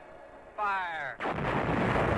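Logo sound effect for an animated rocket logo. About half a second in, a short tone falls in pitch, then from just over a second in comes a loud, steady rush of noise like a rocket blast.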